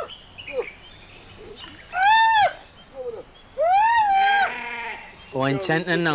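Goat bleating: three loud, high calls that rise and fall, the last held longer and ending in a wavering tail.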